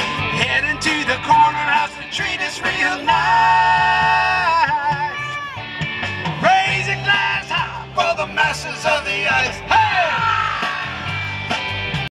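Live rock band playing guitars and drums, with a long held, wavering note about three seconds in and falling slides near the end.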